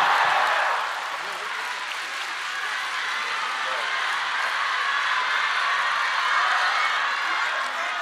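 Large theatre audience applauding steadily, loudest in the first second, as performers come on stage.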